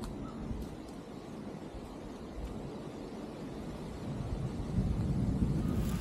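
Wind buffeting the microphone outdoors, a low rumbling noise that grows stronger over the last couple of seconds.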